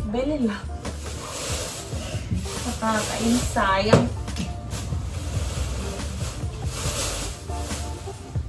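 Handling noise of an aluminium trolley case: knocks and rattles as it is moved and its telescoping handle is worked, with a sharp clunk about four seconds in, under background music and a few spoken words.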